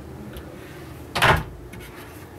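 A wooden cabinet door being shut: one short knock about a second in, followed by a few faint clicks.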